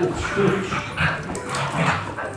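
A dog giving several short barks and whines in quick succession.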